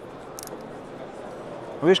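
Pelengas 2019 speargun reel being wound by hand, a faint short rasp about half a second in and light ticking, over a steady hall hubbub; it winds easily.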